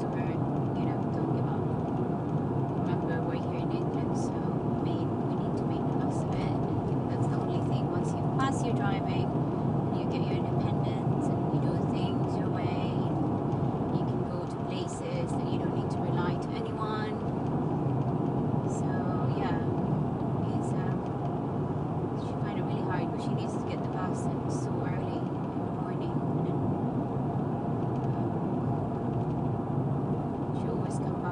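Steady road and engine noise heard inside the cabin of a moving car.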